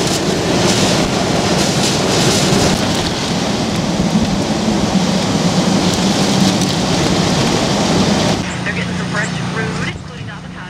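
Hurricane-force wind and heavy rain, a loud steady rush that surges in gusts and buffets the microphone. About eight seconds in it cuts suddenly to a much quieter stretch with a low steady hum.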